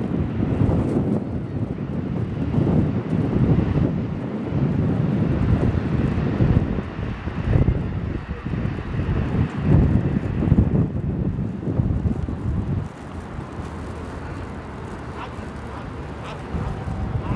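Wind buffeting the microphone: an irregular, gusty low rumble that eases about 13 seconds in.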